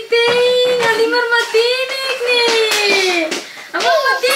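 Baby vocalizing in long, drawn-out, high-pitched vowel sounds, with a short break near the end before starting again.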